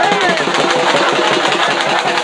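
Dappu frame drums beating a fast, even rhythm, with a crowd's voices over it.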